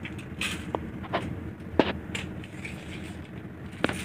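Tape measure being worked against a sheet-metal HVAC cabinet: a handful of sharp clicks and taps scattered over a steady low hum.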